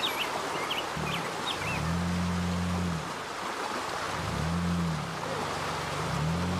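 Rushing stream water with an off-road Jeep's engine rising and falling in long revs as it crawls through the rocky creek bed. Birds chirp briefly in the first second.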